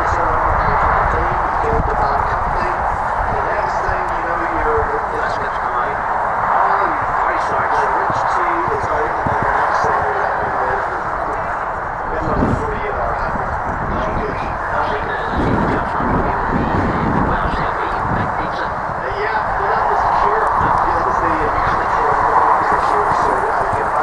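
Indistinct voices under a constant rushing noise.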